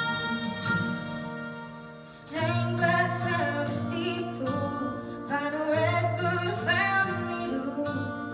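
A young female vocalist singing a country ballad live into a microphone over an accompaniment of acoustic guitar and strings. The voice comes in about two and a half seconds in, after a short instrumental passage that dips in level.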